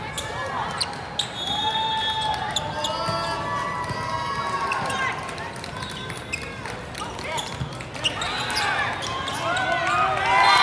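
Volleyball rally on an indoor court: players calling and shouting to each other, with several sharp smacks of the ball being played.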